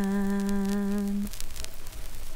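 A voice humming one long held note, which stops about a second and a quarter in and leaves faint hiss with a few crackles.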